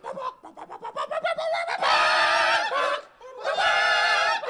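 Outro jingle of nasal, honking, voice-like notes: a quick stuttering run of short notes, then two long held notes with a short break between them.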